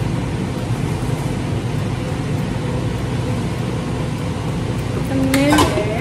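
Steady low fan hum throughout. About five seconds in, a short voiced sound rises in pitch.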